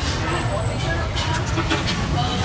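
Busy street-market ambience: distant voices chattering over a steady low rumble, with a few faint knocks in the second half.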